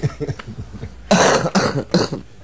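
A man coughing: a few short coughs, then one loud, harsh cough just after a second in, followed by a couple of smaller ones.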